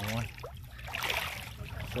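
Shallow lake water sloshing and trickling around a wader's legs over a pebble bed, with a short swell of splashing about a second in.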